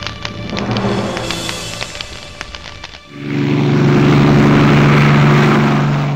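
Soundtrack music with plucked notes and light percussion fades out, then about halfway through a loud, steady, engine-like drone swells in and holds, a sound effect matching the small aircraft flying overhead.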